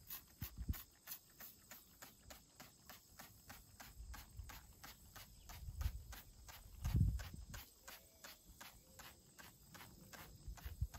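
Plastic trigger spray bottle being squeezed over and over, a quick run of spritzes at about four a second. A few low thuds come through, the loudest about seven seconds in.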